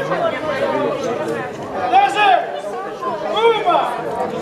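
Crowd chatter: many people talking at once, overlapping voices with no single speaker standing out.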